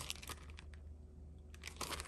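Faint crinkling and rustling of a cutting die's paper-and-plastic package being handled, with a few brief rustles near the start and again near the end.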